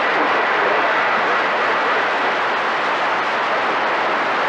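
Steady hiss of static from a CB radio receiver tuned to channel 28 (27.285 MHz), heard between transmissions, with a faint thin whistle in the middle.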